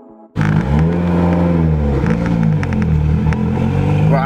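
Tuned, turbocharged Mitsubishi Lancer Evolution X with an aftermarket exhaust, its four-cylinder turbo engine pulling under acceleration. The engine note starts suddenly, climbs, falls away over a couple of seconds and climbs again near the end, with scattered crackles over it.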